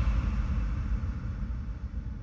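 A low rumble with a hiss above it, slowly fading out just after the last beats of a deep house track.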